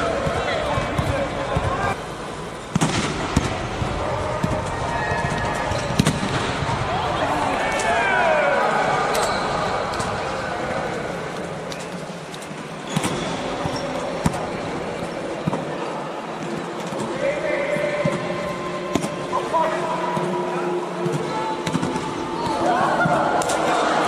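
Players' voices and chatter in a large indoor sports dome, with sharp smacks of volleyballs being hit and bouncing on the court every few seconds.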